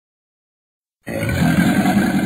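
Cartoon dragon monster's roar, a monster sound effect. It starts suddenly about a second in after silence and is loud and sustained.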